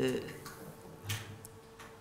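A man's short chuckle at the start, then soft breaths and mouth clicks, with a brief low hum about a second in.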